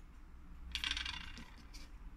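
Steel watchmaker's tweezers handled on the bench: a brief metallic clatter about a second in, then a single light click.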